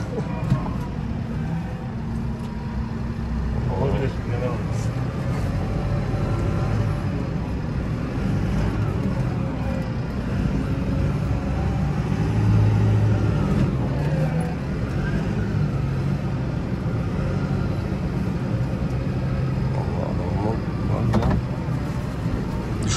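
Deutz-Fahr 6135C tractor engine running, heard from inside the cab as a steady low drone that rises and falls a little as the tractor moves slowly.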